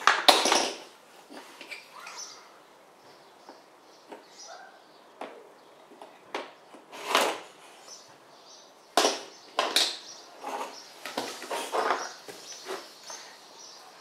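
Toys knocking and clattering on a wooden floor as a toddler handles them: scattered sharp knocks of plastic building blocks and small toys being tapped and set down, with short quiet gaps between.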